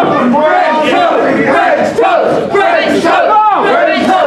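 A small crowd of wrestling spectators shouting, many voices overlapping at once.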